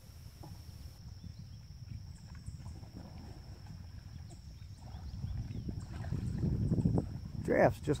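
Outdoor creek ambience: a low, uneven rumble of wind on the microphone, growing louder over the last few seconds, under a thin steady high-pitched whine, with a few faint high chirps. A man's voice comes in near the end.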